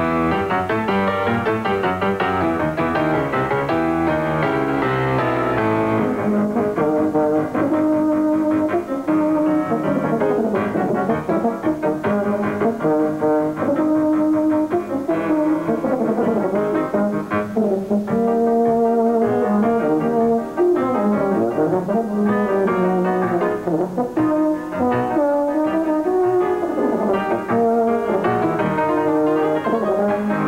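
Solo euphonium playing a melody with piano accompaniment. The piano plays alone for the first six seconds or so before the euphonium enters.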